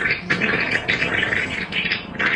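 A quick run of short, rasping, noisy bursts, several a second, from an animated clip's soundtrack.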